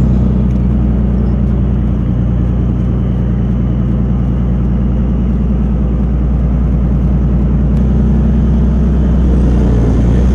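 Leopard 2A5 main battle tank's V12 diesel engine running steadily as the tank drives and turns, heard from on top of the vehicle, picking up slightly near the end.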